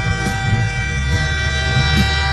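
A train horn sounding one long, steady chord over a low rumble.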